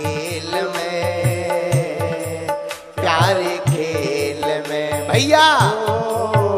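Hindi devotional bhajan music: a sustained melody over a steady low drum beat of about two strokes a second. A wavering sung note glides up and down about five seconds in.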